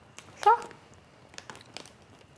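A woman says a single short word, "Sure," about half a second in. Then come a few faint clicks and rustles of hands at work.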